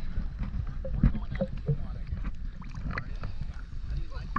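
Small ocean waves sloshing and lapping against a camera held at the waterline, with a steady low rumble and many small scattered splashes.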